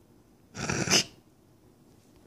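A single short, loud burst of noise about half a second in, lasting about half a second and loudest just before it cuts off.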